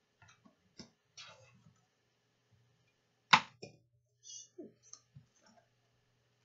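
A deck of oracle cards being handled: scattered soft clicks and brief rustles of card stock as cards are drawn from the deck and laid on a wooden table. One sharp snap about three seconds in is much the loudest.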